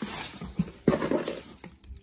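Clear plastic packaging bag rustling and crinkling as it is handled, in two bursts, the second starting about a second in.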